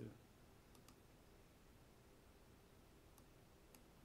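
Near silence: room tone with a few faint, isolated clicks of a computer mouse, about four spread across the few seconds.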